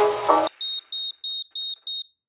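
Background music that cuts off abruptly about half a second in, followed by a string of five short, high electronic beeps, about three a second.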